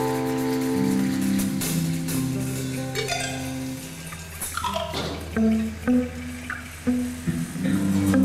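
Live marimba and percussion band music. Low notes are held through the first half, the music thins out about halfway, then a few separate struck notes sound before the full band swells back in near the end.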